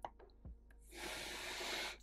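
A couple of faint clicks, then a person's audible breath in, lasting about a second and stopping sharply.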